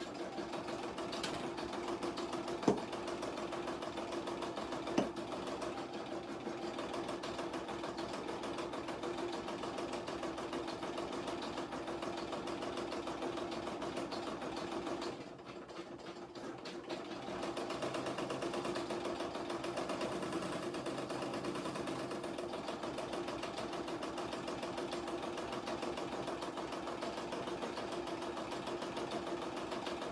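Home embroidery machine (a 770) stitching out a design at a steady running speed. Two sharp clicks come in the first five seconds, and the running sound dips briefly about halfway through before picking up again.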